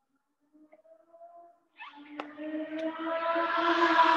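Keyboard instrument starting a hymn: a few soft single notes, then about two seconds in a full chord comes in and is held, growing louder.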